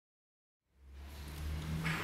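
Silent at first, then a low, steady hum fades in about two-thirds of a second in and grows louder. It comes from the amplified acoustic guitar: a low note left ringing through the sound system.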